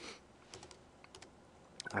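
A few light, scattered computer keyboard keystrokes: short clicks about half a second in, a pair just after one second, and one more near the end.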